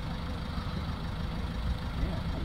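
A Toyota Urban Cruiser's 1.4 D-4D four-cylinder diesel idling, heard close to its tailpipe as a steady, low running sound.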